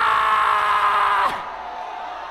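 A man's long, high, held shout through a microphone and PA, sustained on one pitch and cut off about a second and a half in. Only the hall's crowd noise remains after it.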